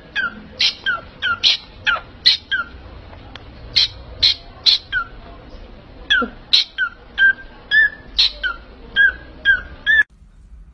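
Small pet parrots calling in a rapid string of short, sharp chirps, two or three a second, each sliding quickly down in pitch.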